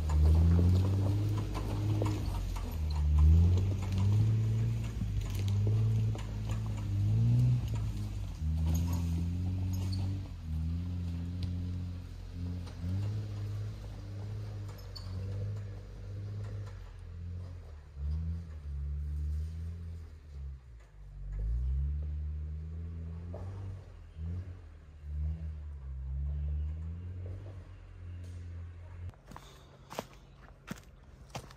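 Jeep Wrangler engine pulling in four-low first gear as the Jeep crawls up a steep, rocky trail, its low note rising and falling with each blip of throttle and fading as it climbs away.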